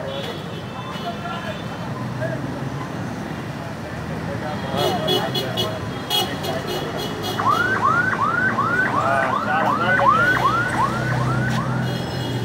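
Busy street noise with an electronic vehicle siren yelping in quick repeated rising-and-falling sweeps, about three a second, starting a little past halfway and running for about four seconds.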